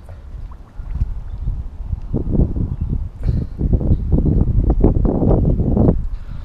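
Wind buffeting the microphone: a low rumble that gets louder and gustier about two seconds in.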